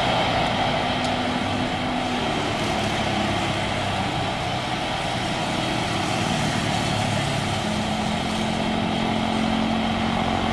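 Twin jet engines of a widebody Airbus A330 running steadily at idle thrust while it taxis: an even rushing noise with a low steady hum that grows a little stronger near the end.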